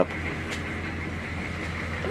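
Military pickup truck's engine idling steadily, a low, even hum.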